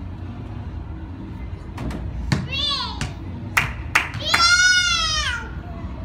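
A toddler squealing twice at a very high pitch, a short squeal about two and a half seconds in and a longer, louder one near the end that falls slightly at its close. A few sharp clicks come before and between the squeals.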